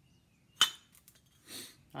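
A single sharp metallic clink about half a second in as the iron parts of a pitcher pump's handle and plunger assembly knock together while being handled, followed by a fainter noise about a second later.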